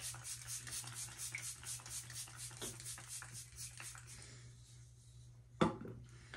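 Makeup setting spray misted onto the face, the pump worked rapidly in about five short hissing sprays a second that fade out after about four seconds. A brief louder sound comes near the end.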